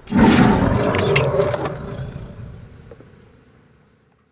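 A loud roar that bursts in suddenly and fades away over about three seconds.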